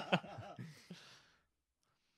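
A man's laughter tailing off into a long breathy sigh, which cuts off abruptly about one and a half seconds in.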